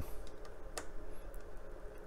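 A few faint light clicks of a screwdriver and a small metal M.2 heatsink being fitted over the drive on the motherboard, with one clearer click about three-quarters of a second in.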